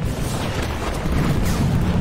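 Action-film battle sound mix: a continuous, loud low rumble of explosions and crashing debris, swelling a little past a second in.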